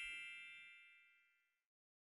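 The tail of a bright, bell-like electronic chime from an audio logo, several tones ringing together and fading away within the first second.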